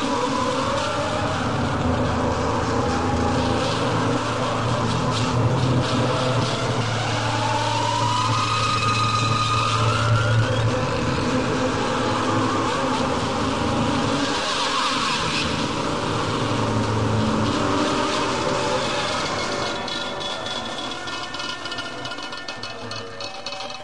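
A noisy, machine-like passage of an experimental music track: a steady low drone with higher tones sliding slowly up and down over it, thinning out near the end.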